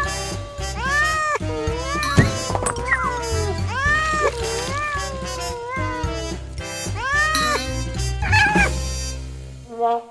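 A cat meowing several times, long drawn-out meows that rise and fall in pitch, over background music.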